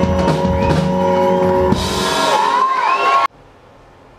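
Indie-pop rock band playing live, with drums, guitar and held notes. The drums drop out a little under halfway through, leaving a sustained note that bends upward over a bright high wash. The music then cuts off abruptly near the end to quiet room tone.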